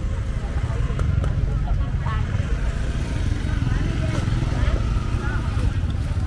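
Busy street-market ambience: scattered background voices of vendors and shoppers over a low, steady rumble of motorbike traffic.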